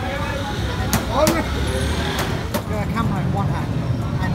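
Busy street ambience: unintelligible background voices over a steady low rumble of traffic, with a few sharp clicks about a second in and again after two and a half seconds.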